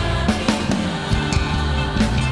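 Live Christian worship music from a band: a steady bass line under sustained instruments, with drum hits.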